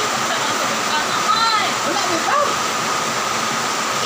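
A steady rushing hiss with a faint constant whine, with brief faint voices about a second in and again near two seconds.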